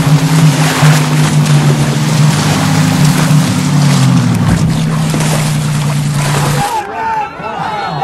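Personal watercraft (jet ski) engine running steadily at speed, with the hiss of churned water and spray over it. About two-thirds of the way through it cuts off, and birds chirping are heard instead.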